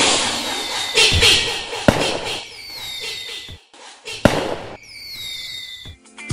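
Fireworks sound effect: sharp bangs with crackling between them, and whistles falling in pitch near the end.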